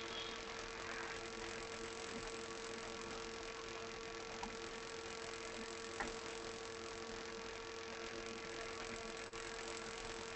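Steady low-level background hiss with a constant electrical-sounding hum, and a faint click about six seconds in.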